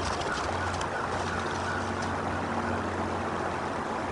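Steady rush of running water from a nearby stream, with a constant low hum under it. A few faint crackles in the first second come from the bald eagle shifting on the stick nest as it tends the eggs.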